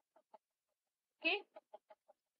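A mostly quiet pause broken by a single spoken "okay" a little over a second in, followed right away by a quick run of four short pitched sounds.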